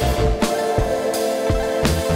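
Background music with a steady drum beat over held tones.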